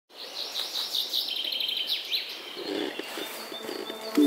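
Wild birds singing: a string of high chirps with a quick, rapid trill about a second and a half in, growing fainter after two seconds.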